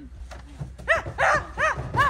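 A dog barking: four short barks in quick succession, starting about a second in.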